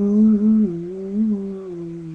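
A man humming a long, wavering low note, unaccompanied, that steps down in pitch and gradually fades.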